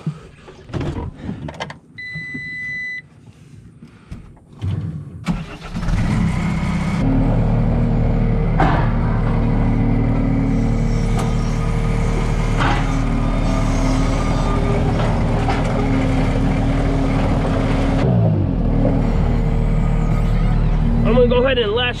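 A short electronic beep about two seconds in, then a New Holland skid steer's diesel engine cranks and starts about five seconds in and runs steadily. A brief falling tone comes near the end.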